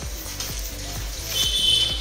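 Background music playing over water splashing and sloshing as hands wash raw chicken pieces in a steel pot of water; the splashing grows louder in the second half.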